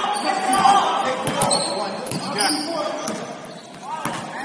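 Basketball being dribbled on a hardwood gym floor, a few irregular bounces, with short high squeaks and players' voices ringing in a large hall.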